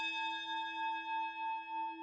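A struck bell ringing out: several steady, unevenly spaced tones slowly fading, with a gentle wavering pulse in loudness.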